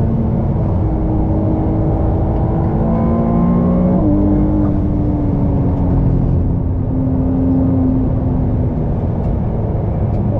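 Ferrari 296 GTB's twin-turbo V6 pulling with its pitch slowly climbing, an upshift about four seconds in that drops the pitch, then the engine note slowly falling for the rest of the time, over steady road and wind noise.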